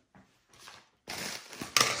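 Padded bubble mailer being picked up and handled: a papery rustling crinkle that starts about a second in, with a couple of sharp clicks near the end.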